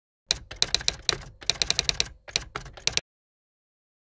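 Typewriter keys striking in quick runs, a typing sound effect that starts about a third of a second in and stops suddenly about three seconds in.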